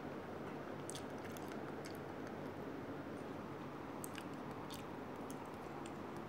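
A person chewing crunchy dry snacks, with faint, irregular crunches over a steady low hum.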